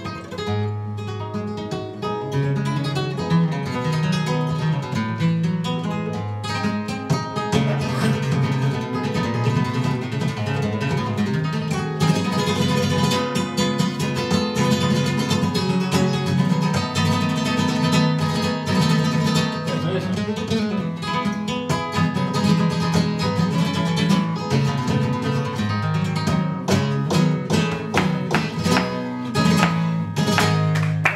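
Solo flamenco guitar: plucked melodic runs over a repeating bass line, breaking into rapid strummed chords near the end.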